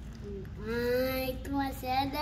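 A young child's voice singing a few held, drawn-out notes, starting about half a second in.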